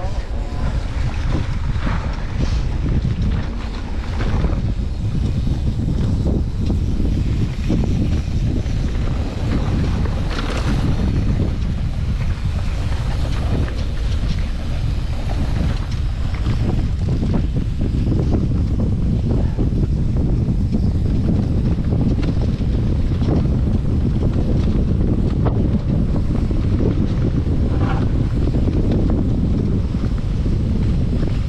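Steady wind noise on the microphone over the low rumble of a mountain bike's tyres rolling fast on a grassy track, with a few brief knocks from bumps.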